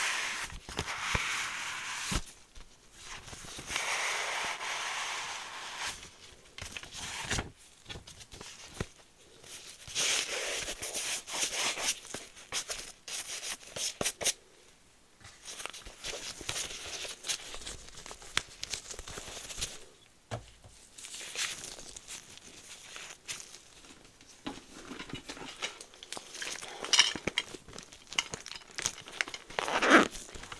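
Nitrile-gloved hands handling items close to the microphone in on-and-off stretches of crackly rustling with small clicks and taps. Early on they leaf through a small booklet, and near the end they crinkle a clear plastic zip pouch.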